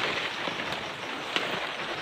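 Steady crackling rustle of leaves and brush being pushed through or trodden, with a couple of faint snaps.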